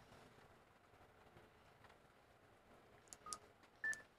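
Near silence, then about three seconds in a few faint clicks and a short electronic beep, followed near the end by a second, slightly higher beep from a handheld two-way radio.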